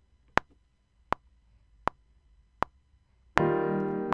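Logic Pro X metronome count-in: four evenly spaced clicks, about 80 to the minute, over near silence. Near the end, on the next click, recording starts and a piano part plays with a sustained keyboard chord, the click going on with it.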